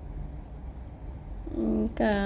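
A low, steady rumble, with a woman's voice starting about one and a half seconds in.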